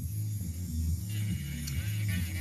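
Electric nail drill (e-file) with a diamond bit running with a steady low hum, music playing faintly over it.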